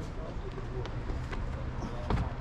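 Outdoor background noise with faint voices of people nearby and a few light, sharp taps.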